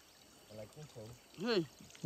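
Mostly a man's voice: soft murmurs and a short rising-and-falling "hm" about one and a half seconds in, over faint trickling water.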